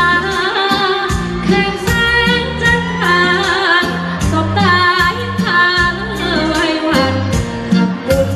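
A female singer singing a Thai luk thung song live into a microphone over backing music with a steady bass and drum beat; the vocal line is held and wavering, with vibrato on the long notes.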